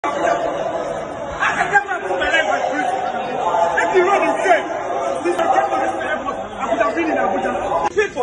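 Several people talking over one another in an argument, their words running together into unintelligible chatter.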